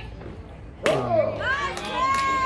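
A softball pitch smacking into the catcher's mitt with a single sharp pop about a second in, followed at once by players' voices shouting and cheering.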